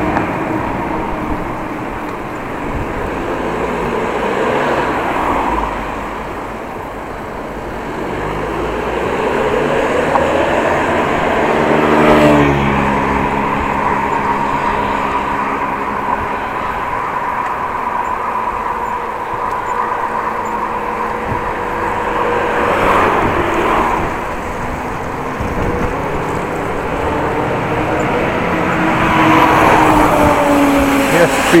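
Urban road traffic heard from a moving bicycle: cars and trucks running past. One vehicle passes close about twelve seconds in, the loudest moment.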